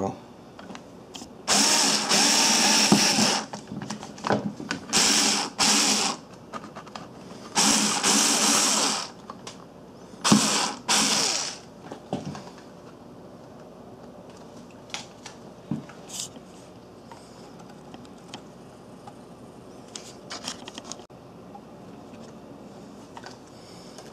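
Power drill-driver running in four short bursts, driving a screw into the wall to fix a thermostat base, then faint handling clicks.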